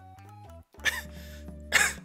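A man coughs twice, about a second in and near the end, over background music with a steady low bass.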